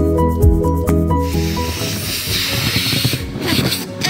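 Short music with tuned percussion and a bass line, cut off about a second in; then a steady hiss of air escaping through the neck of an inflated rubber balloon.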